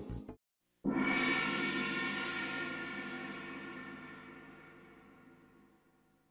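A single gong-like ringing tone sounds about a second in, holding many pitches at once, and fades away slowly over about five seconds. Just before it, the background music cuts off.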